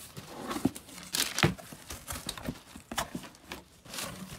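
Cardboard box flaps being pulled open and crumpled brown kraft packing paper rustling and crinkling as hands dig through it. It comes in irregular bursts, loudest about a second and a half in.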